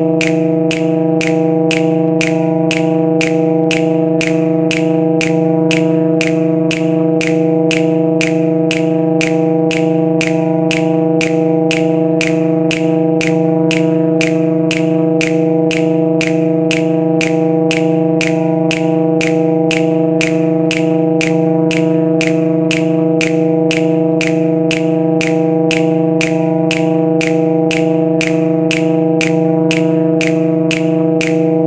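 Looped electronic music from a software sampler: a sustained low sampled trombone note held as a steady drone, with a short dry snap sample clicking evenly about twice a second.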